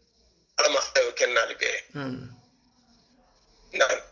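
A man speaking: a short phrase of about two seconds, then a pause, then one brief abrupt vocal sound near the end.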